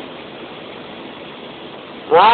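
A steady hiss of background noise with no speech or distinct events in it.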